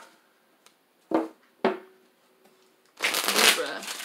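Tarot deck handled and shuffled by hand: two short knocks as the deck is squared, then, near the end, a riffle shuffle, with the cards flicking rapidly through one another.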